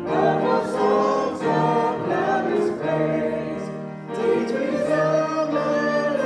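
Church congregation singing a hymn together, led by a woman singing into a microphone.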